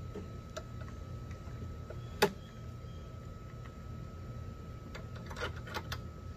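Small clicks and knocks of plastic and metal mower parts being handled and fitted during hand assembly of a push mower. There is one sharp click about two seconds in and a short cluster of clicks near the end.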